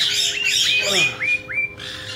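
Caique calling: a harsh screech, then a quick run of about five short whistled notes, each flicking upward.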